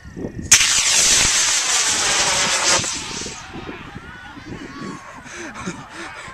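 Model rocket motor igniting with a sudden loud whoosh about half a second in. The hiss of the burning motor lasts about three seconds, then fades as the rocket climbs away.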